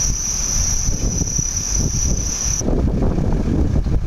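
A continuous high-pitched insect trill, cricket-like, which cuts off abruptly about two and a half seconds in. Under it runs low rumbling street noise and wind on the microphone, which grows stronger once the trill stops.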